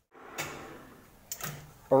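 A knock from metal being handled at a metal-working lathe about half a second in, fading out, then a second sharper knock a little past a second; a man starts speaking right at the end.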